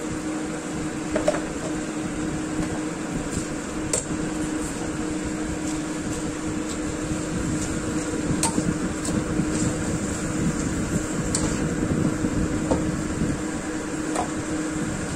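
A spatula scrapes and taps in a nonstick wok, stirring napa cabbage and enoki into simmering sauce. Scattered short clicks come through, busier in the second half, over a steady hum.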